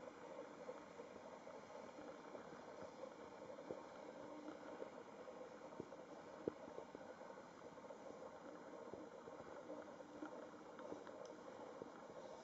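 Faint steady hiss of a disposable butane lighter's flame held against paper, with a few small ticks now and then.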